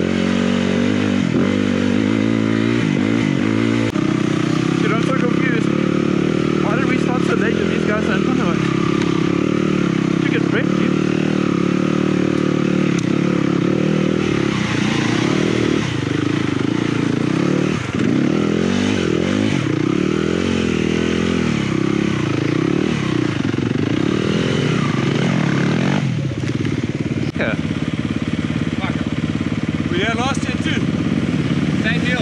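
Dirt bike engine running close to the microphone, the revs rising and falling constantly as it is ridden along a rough trail. A few seconds before the end the revs drop as the bike slows down.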